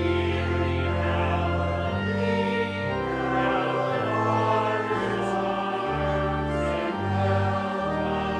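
Choral music: a choir singing slow, sustained chords over a bass line, the held notes changing every second or two.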